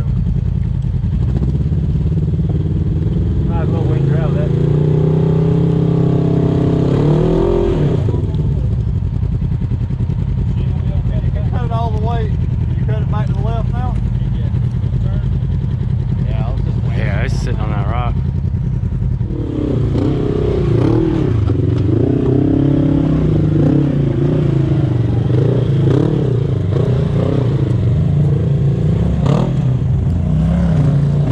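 Side-by-side UTV engine running and being revved repeatedly as it crawls over a rock ledge, its pitch rising a few seconds in and varying up and down through the second half.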